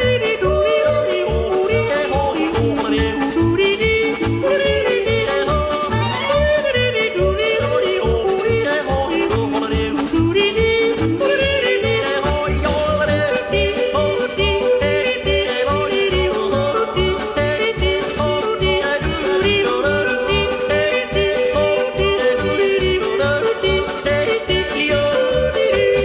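Music with a steady bass beat and a moving melody line.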